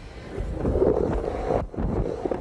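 Skateboard wheels rolling on a wooden vert ramp: a low rumble that builds about half a second in as the rider comes down into the transition, and dips briefly near the end.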